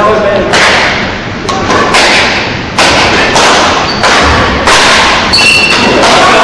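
Badminton rackets striking the shuttlecock: a string of sharp, irregular hits, roughly eight or nine, echoing in a large sports hall, with a brief high squeak near the end.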